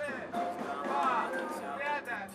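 Indistinct voices of people talking around the court, with faint music behind.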